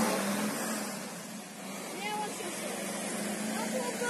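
Road traffic on a wet street, cars and a fire engine driving past: tyre hiss over a steady engine hum, loudest at the start and easing off about a second and a half in.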